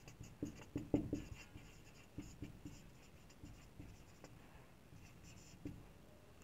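Marker writing on a whiteboard: a faint run of short, irregular strokes and taps, busiest and loudest about a second in, then sparser.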